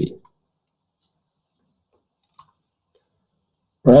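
Near silence with two faint, short clicks, about one second and two and a half seconds in. A man's voice says a syllable at the very start and a word at the end.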